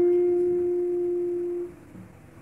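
A single acoustic guitar note held and left to ring, slowly fading, then damped off suddenly near the end.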